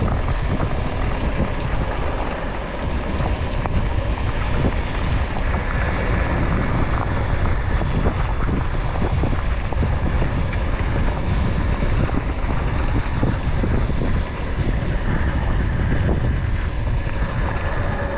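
Steady wind buffeting the microphone, mixed with tyres rolling over a loose gravel track, as an RFN Rally Pro electric dirt bike rides along.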